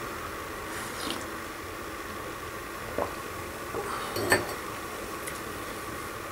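A person sipping from a ceramic mug, then small knocks about three and four seconds in as the mug is handled and set down, over a steady low room hiss.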